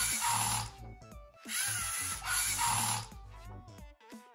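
LEGO Mindstorms EV3 robot's drive motors whirring in two runs of about a second and a half each, driving one wheel rotation forward and then one back. The first run ends just after the start and the second begins about a second and a half in. Soft background music plays underneath.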